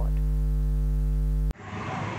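Steady electrical mains hum, a low buzz with a strong deep tone and its overtones. It cuts off suddenly about one and a half seconds in and gives way to outdoor background noise.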